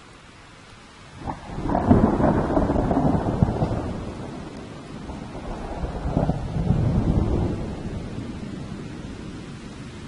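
Steady rain with a thunderclap: a sharp crack about a second in, then a long rolling rumble that swells a second time midway and slowly dies away.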